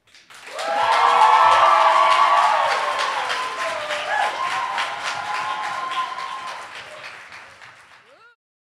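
Theatre audience applauding and cheering at the end of a poem. It swells within the first second, then slowly fades away.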